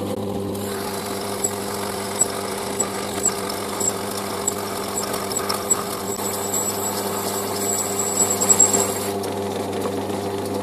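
Metal lathe running with a steady hum while its tool cuts an aluminium tube. The cutting hiss with a faint high squeal and scattered ticks comes in about half a second in and stops about a second before the end, loudest just before it stops.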